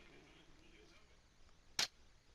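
Near silence, broken by one short sharp click about two seconds in.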